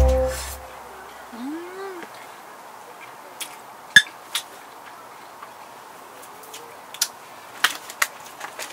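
Background music ends just after the start. Then it is quiet, apart from a few sharp clicks of a metal fork against an enamel bowl; the loudest comes about four seconds in.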